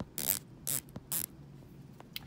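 Omega Seamaster Diver 300M's 120-click ceramic dive bezel being turned by hand: three short ratcheting bursts of clicks in the first second and a half.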